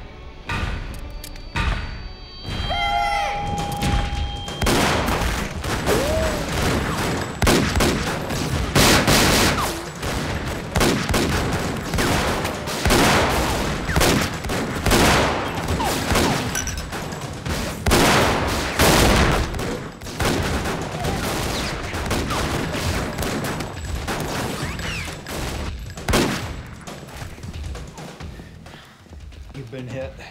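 Dense gunfire from pistols: many shots in quick succession, some overlapping, from a few seconds in until about a second before the end.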